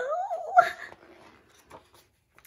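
A woman's short wordless vocal sound, rising and wavering in pitch, under a second long, followed by the soft rustle of a picture-book page being turned.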